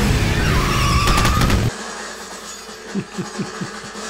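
Film soundtrack with a motorcycle engine running loud over the rumble of a fiery explosion, cut off suddenly a little under two seconds in; after that only quieter, low sounds remain.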